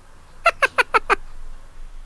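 High-pitched giggle: five quick, squeaky 'hee' notes, about six a second, each dipping slightly in pitch.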